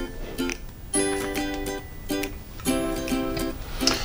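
Light background music of plucked-string chords, each chord struck and held for about a second.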